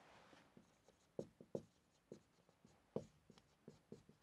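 Faint scratches and taps of a marker pen writing on a whiteboard, a series of short strokes with a few sharper ones.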